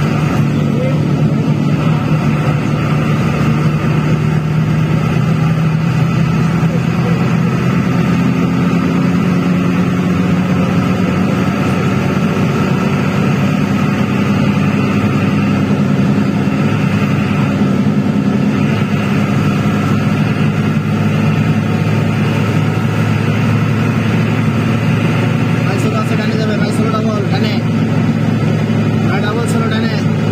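Steady drone of a road vehicle's engine at highway speed. Its pitch rises a little over the first ten seconds and dips about eighteen seconds in.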